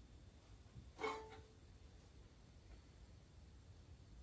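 Near silence: room tone, with one brief faint sound about a second in.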